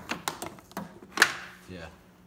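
A quick run of clicks and knocks from handling at an engine's open cylinder head, the loudest a sharp knock about a second in with a short ring.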